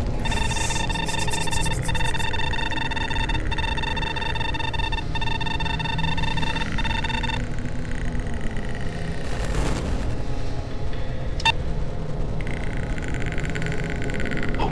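Dark electronic sound-effect bed: a deep, steady rumbling drone, over which a high pitched electronic tone sounds for about seven seconds, briefly broken about every second and a half. A whoosh follows near ten seconds, then a sharp click, and a thin hiss comes in near the end.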